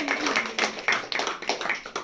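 A small group of people applauding, with quick, irregular hand claps that die away near the end.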